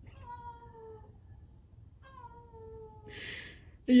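A cat meowing twice: two long, drawn-out calls, each sagging slightly in pitch, about two seconds apart. A short breathy noise follows near the end.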